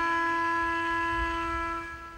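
The final held note of a slow live ambient rock piece, one steady sustained tone, dying away near the end.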